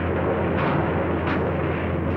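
Sound-effect storm rumble as lightning strikes the cabin radio: a steady, loud rumbling noise with two faint crackles, over the old optical soundtrack's constant low hum.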